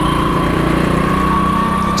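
Motorcycle engine running steadily at low speed as the bike rolls off, heard close from the rider's seat, with a thin steady whine over it.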